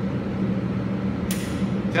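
Steady low hum of the indoor range, with one short sharp click about 1.3 s in: the pistol's trigger dropping on a round that fails to fire, a malfunction that calls for a tap-rack.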